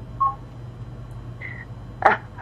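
A pause on a telephone line: a steady low hum with two brief electronic beeps, a short one about a quarter second in and a higher, slightly longer one about one and a half seconds in.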